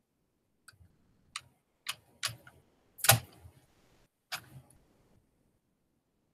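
About six sharp, irregularly spaced clicks over four seconds, the loudest about three seconds in.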